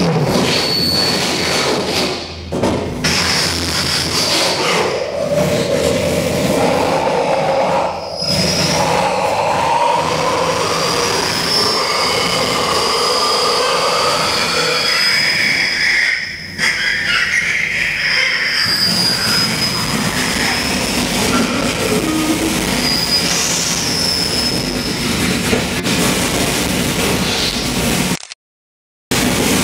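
Live harsh noise music from amplified electronics: a loud, dense wall of noise with shifting tones sliding up and down over it. It drops out briefly a few times, about two, eight and sixteen seconds in.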